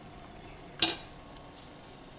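A single sharp clink of metal kitchenware a little under a second in, ringing briefly, over a low steady kitchen background.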